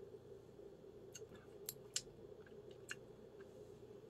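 Near silence with a faint steady hum, broken by a few small, soft mouth clicks and smacks as a sip of beer is held and tasted.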